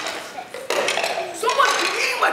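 Young actors' voices from the stage, starting about two-thirds of a second in, with pitch slides up and down.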